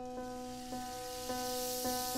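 Instrumental jazz-fusion music: a pitched keyboard note pattern repeats about twice a second over a soft hissing wash of high noise.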